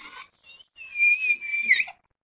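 A woman's thin, high-pitched squealing cry, held for about a second and rising at the end. She is acting out the loud cry of an evil spirit leaving her body.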